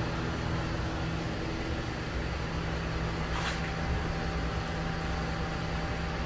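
Greenhouse wall-mounted exhaust fan of a fan-and-pad evaporative cooling system running steadily: an even whirring rush of air with a constant low hum. A brief hiss about three and a half seconds in.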